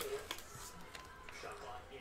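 Faint crinkle of a foil trading-card pack and a plastic card sleeve being handled as a card is slid out, with a few light clicks near the start.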